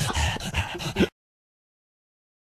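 Men laughing hard in short, broken, breathless bursts; the audio cuts off abruptly about a second in.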